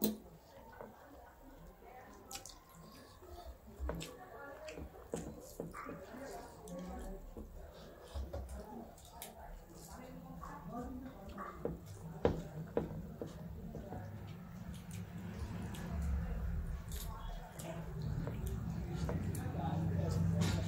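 Eating by hand: fingers squishing and mixing rice and curry on metal plates, with chewing and lip smacks heard as scattered short clicks. A low steady hum comes up over the last few seconds.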